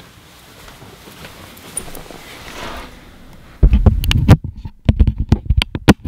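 Faint hiss from a camera-mounted Rode VideoMic Pro shotgun microphone at +20 gain, then from about halfway in loud, irregular handling thumps and sharp clicks as the microphone is touched and its level and high-pass filter switches are changed.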